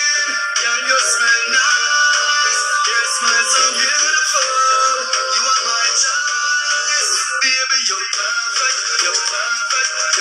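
A recorded song with singing, playing as music for a dance.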